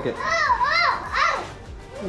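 A small child's very high voice, sing-song and playful, sweeping up and down in pitch for about a second, then dropping away.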